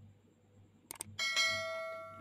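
Subscribe-button animation sound effect: a quick pair of mouse clicks about a second in, then a notification bell chime that rings out and fades.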